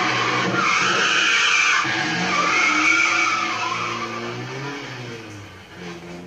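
Film sound effect of a car's tyres screeching in a long skid, the squeal wavering up and down in pitch over a running engine, then fading away in the last couple of seconds.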